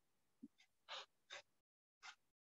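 Near silence, broken by a few faint, short squeaks of a marker on a whiteboard, from about half a second to a second and a half in.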